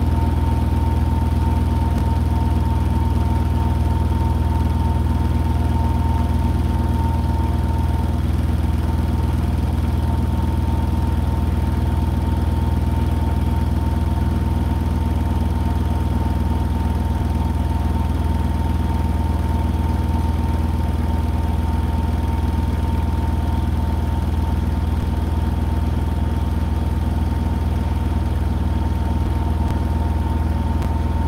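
Hotpoint NSWR843C front-loading washing machine spinning at a constant speed: a steady low hum with a steady whine above it.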